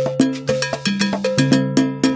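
Background music with a Latin rhythm: quick, evenly spaced percussion strikes, about five a second, over a bass line that steps between notes.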